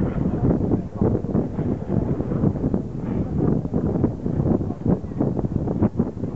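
Wind buffeting the microphone outdoors on the water: an irregular rumbling noise with constant gusty flutter, heaviest in the low end.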